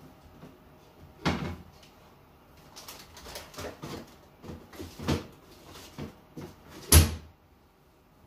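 A series of knocks and clatters from things being handled and set down in a kitchen cabinet or appliance, ending in one sharp bang about seven seconds in.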